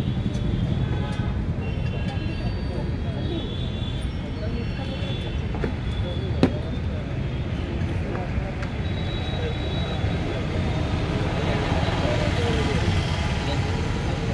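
Busy street-stall ambience: a steady low rumble of traffic with indistinct background voices, and one sharp click about six seconds in.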